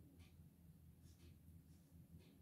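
A few faint, short scratches of a black felt-tip marker stroking across paper as a band of the drawing is filled in, over a low steady hum.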